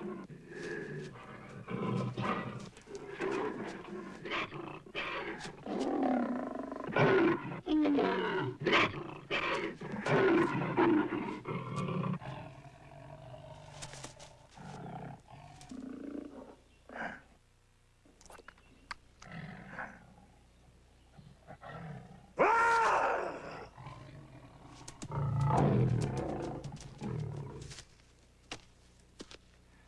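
Black panther growling and roaring in a string of bursts, with a long roar about two-thirds through and a deep growl near the end.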